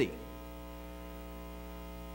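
Steady electrical mains hum, a low buzz with many evenly spaced overtones that holds unchanged.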